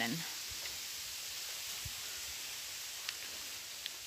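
Steady faint hiss of outdoor background noise with no distinct event, and one faint knock about two seconds in.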